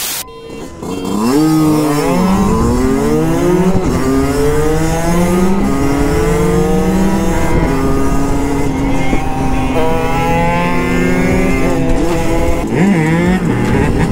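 A brief burst of static noise, then the two-stroke engine of a 50cc Derbi Senda Xtreme dirt bike and other small motorbikes revving hard, the pitch climbing and dropping again and again with each gear change as they accelerate.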